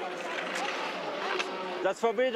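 Background chatter of a large crowd: a steady murmur of many voices with faint snatches of speech, none close or clear.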